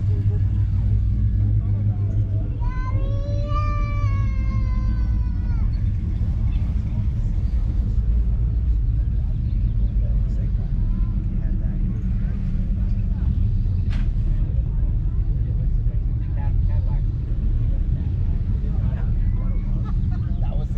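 A steady low rumble throughout, with a drawn-out, wavering voice-like call from about three seconds in that lasts some three seconds.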